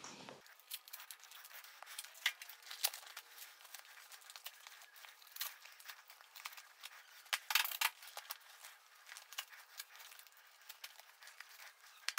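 Faint handling of skate gear as knee pads are strapped on: short rustles, clicks and the rip of hook-and-loop straps, in scattered strokes with a louder cluster about seven to eight seconds in.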